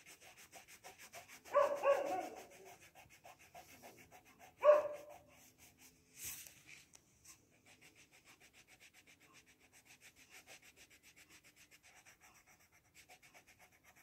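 Brown colour being rubbed on a workbook page to fill in a drawing: quiet, quick back-and-forth strokes scratching on paper, about four or five a second. Two brief, louder sounds come about 2 and 5 seconds in, the second being the loudest thing.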